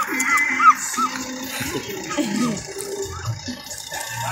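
Background music: a repeating figure of short rising-and-falling notes, about two or three a second, thinning out after about a second.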